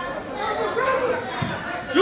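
Several voices calling and chattering at once across a football pitch: players and people on the sideline shouting during play.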